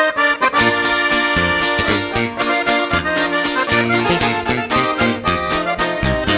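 A norteño band playing live, with an accordion carrying the melody over guitar chords and a moving bass line in a steady rhythm.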